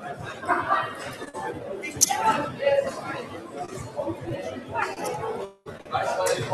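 Chatter of many voices echoing in a large hall, with music faintly behind it and a single sharp knock about two seconds in. The sound cuts out briefly near the end.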